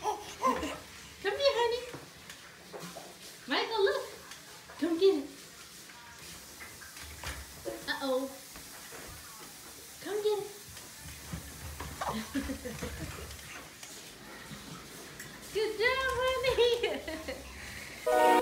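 Baby babbling in short high-pitched vocal bursts: several in the first five seconds, sparser through the middle, and a longer run of babble near the end.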